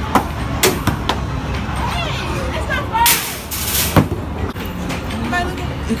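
Skee-ball balls rolled up a wooden arcade lane, giving several sharp knocks, the loudest about four seconds in. Behind them runs the steady din of a busy arcade with chatter, and there is a brief hissing burst about three seconds in.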